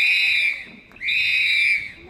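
Long, shrill whistle blasts in a steady rhythm, about one a second: one blast dies away about half a second in, and the next runs from about one second to near the end.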